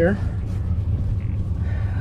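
Boat motor idling, a steady low rumble throughout.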